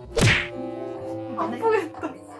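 A sharp whack, like a blow, about a quarter of a second in. Near the end a voice cries out "¡Ay qué dolor!" over soft held music notes.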